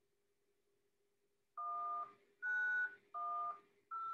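Touch-tone (DTMF) keypad tones over a phone line, starting about a second and a half in: short evenly spaced two-note beeps, the digits 1, 9, 1 and the start of 0, keyed in for a zip code at an automated phone menu's prompt. A faint steady hum runs underneath.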